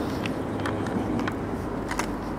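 Steady city-street background hum with a low rumble, and a few soft footsteps about half a second apart from someone walking.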